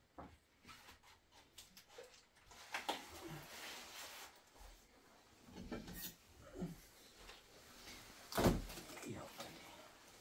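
Faint household handling sounds of objects being picked up, moved and set down, with scattered light knocks and one louder thump about eight and a half seconds in.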